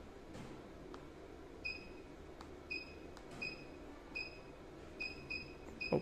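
About seven short, high electronic beeps, irregularly spaced through the second half, each fading quickly, over a faint low hum.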